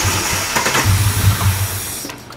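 Ford AU Falcon's inline-six turning over on the starter motor with the fuel pump relay pulled, cranking with an uneven low pulsing so that it runs out of fuel and won't start.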